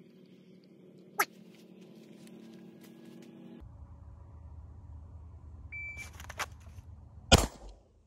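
A shot timer's start beep, then about a second and a half later a single shot from a Sig P365 pistol drawn from deep concealment, with a few rustles and clicks of the draw just before it. The shot is by far the loudest sound.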